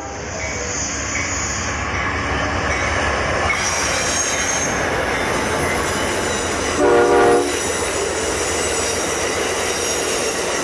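Amtrak passenger train of two GE Genesis diesel locomotives and bilevel cars rolling past at speed, a steady rumble of engines and wheels on rail. High-pitched wheel squeal comes in about three and a half seconds in. The locomotive horn gives one short blast about seven seconds in.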